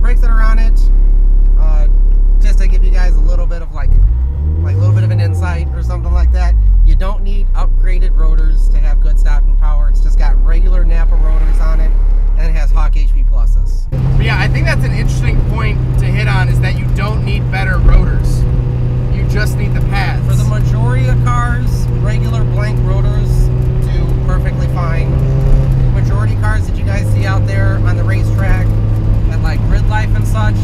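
Cabin sound of a turbocharged 1.8-litre inline-four Mazda Miata driving, a steady engine drone with road noise. The engine note rises and falls briefly early on, steps up to a higher steady pitch about halfway through, and drops slightly near the end.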